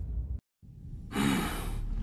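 Dramatic background music cuts off sharply, a moment of silence, then a breathy voiced sigh lasting under a second.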